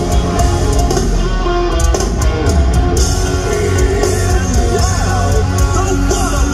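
A live band playing loud, steady rock-style music at an arena concert: electric guitars, bass and drum kit, with keyboards on stage. It is heard from among the crowd.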